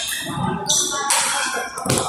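Table tennis ball knocks from rallies in a busy hall, with a sharp knock near the end.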